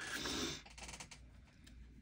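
Small scissors cutting through cotton fabric: a short rustle near the start, then faint, scattered snipping clicks.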